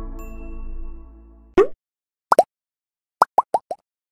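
A logo-intro jingle: a chord of electronic notes fades out, then come short cartoon 'plop' sound effects, each dropping in pitch. There is one at about a second and a half, a quick pair a little later, and a fast run of four near the end.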